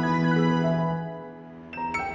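Gentle instrumental background music with bell-like chiming notes over a held low tone. It fades away about a second in, and a new phrase of struck, chiming notes starts near the end.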